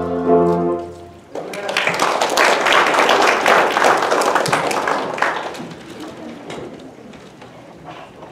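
The final held chord of the youth group's song ends just under a second in. Then a congregation applauds, swelling quickly and gradually dying away.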